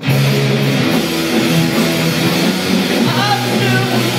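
Live rock band playing loud on electric guitars and drum kit, the full band coming in suddenly right at the start. A voice sings a line about three seconds in.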